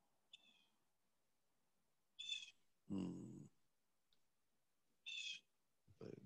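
Near silence, broken by a few faint, brief sounds: short high-pitched blips and, about three seconds in, a short low vocal sound from a person.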